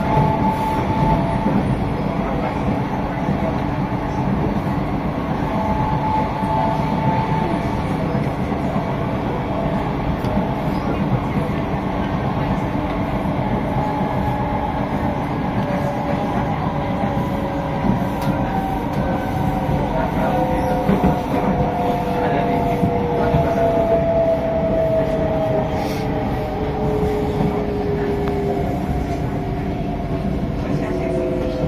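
Onboard an SMRT C151A (Kawasaki–Sifang) metro train running on elevated track: steady rumble of wheels on rail. Over it a motor whine falls gradually in pitch through the second half, as the train slows.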